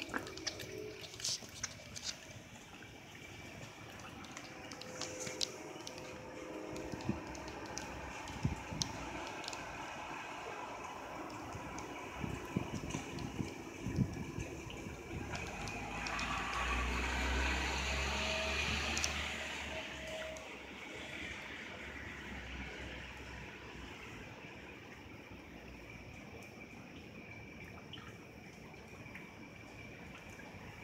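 Rain falling steadily, with sharp drips and splashes ticking through the first half. About sixteen seconds in, a low rumble of thunder swells and fades away over about five seconds.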